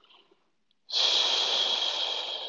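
A woman breathing out through a soft 'shh', a long hissing exhale that starts about a second in and fades away, pressing the air out of her lungs as part of a breathing exercise.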